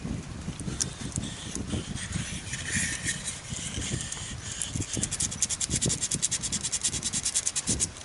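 Hand sanding with sandpaper on a small wooden ship-model hull: quick short rubbing strokes, about ten a second through the second half.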